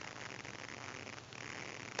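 Faint, steady hiss of background room tone in a pause between words; no distinct event.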